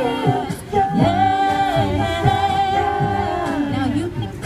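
Mixed-voice a cappella group singing through microphones and a PA: held chords in harmony over a sung bass line, with a low beat about twice a second. The voices dip briefly about half a second in, then come back in on a new chord.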